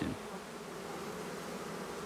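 A mass of honeybees from a freshly installed package colony buzzing steadily, fanning their wings at the hive. The fanning is the sign that the bees have found their new home and are settling in.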